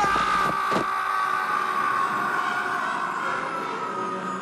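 Film soundtrack of a character falling through the air: one long high tone that sinks slowly in pitch, over a steady rushing noise, with a couple of short knocks about half a second in.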